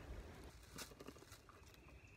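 Near silence, with a few faint short clicks.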